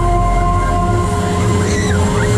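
Lehrmann Heartbreaker fairground ride running at speed: a loud, steady mechanical rumble with several held whining tones from its drives, and a short high squeal near the end.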